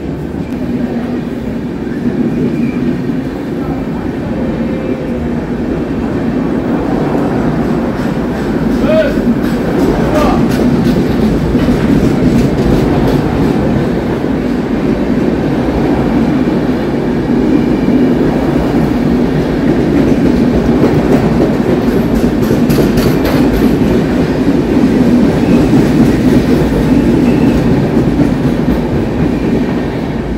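Express train's passenger coaches rolling past as the train pulls out, their wheels rumbling steadily on the rails with a clickety-clack over the rail joints. The sound grows slowly louder as the train gathers speed, with bursts of sharp clacks about nine seconds in and again past twenty seconds.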